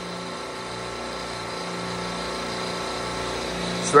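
Steady hum of the running compressors on an R22 supermarket refrigeration rack, an even mechanical drone holding several steady tones.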